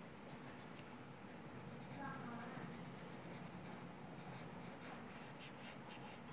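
A pen scratching on paper in short strokes as lines are drawn, the strokes coming more often in the second half, over a steady low room hum.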